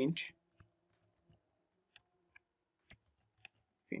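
Keystrokes on a computer keyboard: about six separate clicks, roughly half a second apart, as a short line of code is typed.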